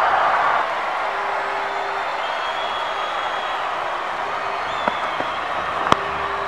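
Crowd applause and murmur at a cricket ground, a steady wash of noise that is a little louder for the first half-second, with a couple of faint clicks near the end.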